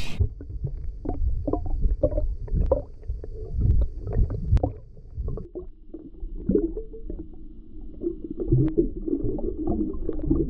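Underwater sound from a submerged camera: a muffled low rumble of moving water with scattered small clicks and knocks, while a hooked spotted bay bass is drawn in on the line.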